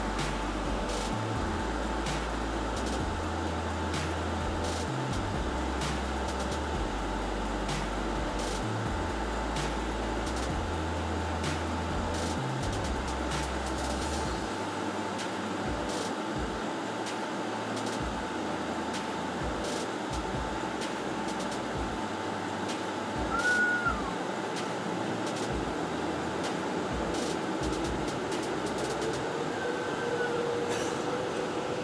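Cabin noise of a Boeing 777-300ER taxiing: a steady hum of engines and air conditioning with a faint steady tone, and a low rumble from the wheels that comes and goes during the first half. A brief high squeak about two-thirds of the way through.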